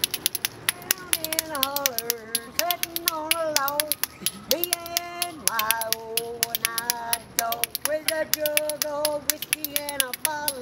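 Spoons played as percussion between hand and thigh: a fast, continuous rattle of clicks. From about a second in, a high voice sings a gliding tune over the rhythm.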